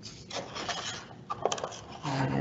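A cardboard Pringles can being picked up and handled on a table: rubbing and scraping, with a few light clicks a little over a second in.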